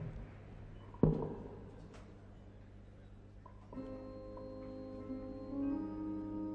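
A single loud thump about a second in, then from nearly four seconds in the orchestra begins the song's introduction with held chords that build toward the end.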